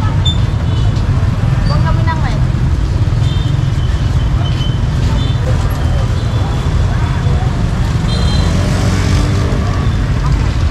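Busy street ambience: a steady low rumble of passing motorbike and road traffic, with people talking nearby.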